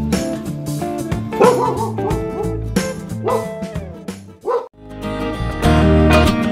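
A labradoodle gives several short barks over background guitar music.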